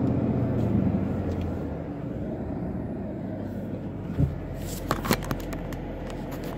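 Low, steady car rumble heard from inside the cabin, fading over the first two seconds, with a few light knocks about four and five seconds in.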